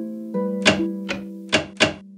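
Knocking on a door, four raps in the second half, the last two quick together, over soft background music with held notes.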